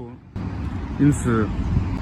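Steady street traffic noise, with a voice speaking faintly for a moment about a second in.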